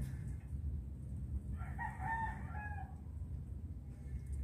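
A rooster crowing once, starting about a second and a half in and lasting just over a second, over a low steady rumble.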